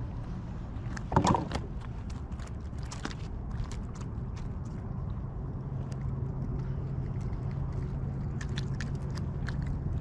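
Small clicks and rustles of hands unhooking a lure from a small spotted seatrout in a kayak, over a steady low rumble. A brief louder sound comes about a second in, and a low steady hum joins about halfway through.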